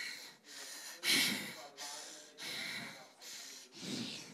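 A young woman breathing heavily and rapidly close to a handheld microphone, about two hard, noisy breaths a second.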